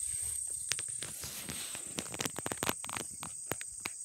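Footsteps swishing and crackling through grass, irregular and busiest in the second half, over a steady high-pitched drone of insects.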